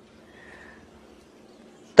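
A short pause in a man's speech: only faint, steady background noise, with a brief faint hiss about half a second in.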